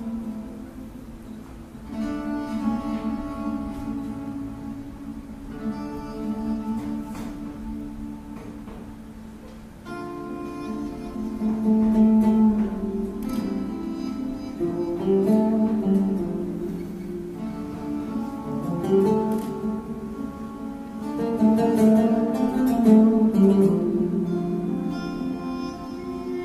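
Live acoustic music on string instruments: plucked notes at first, then sustained melodic lines that swell louder about ten seconds in.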